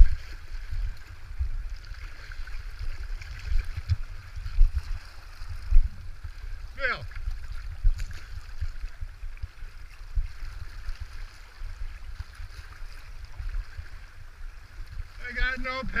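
River water rushing and splashing around a kayak's deck, with a low irregular rumble. A brief falling-pitched call comes about seven seconds in, and a person's voice starts near the end.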